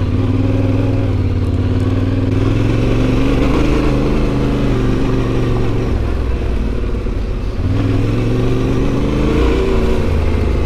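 Adventure motorcycle engine running at low trail speed, revs rising and falling with the throttle. The revs drop about three quarters of the way through, then climb again near the end.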